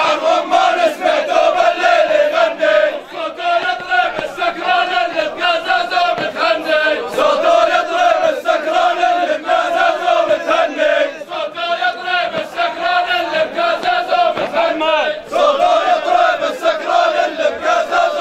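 A line of men chanting loudly together in unison, their voices rising and falling in a repeated phrase. Short sharp beats run through the chant.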